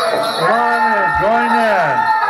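Pow wow singing: voices holding long notes that rise and fall in arches, a few times over.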